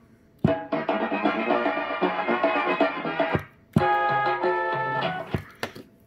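Background music playing from a CB radio's add-on music box, heard through the radio. It stops short twice and starts again with sharp clicks, in step with the microphone key being pressed.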